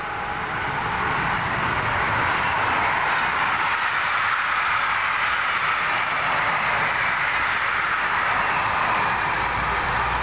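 Double-deck passenger train passing close by. Its steady rush of wheels on rail builds over the first second and then holds level.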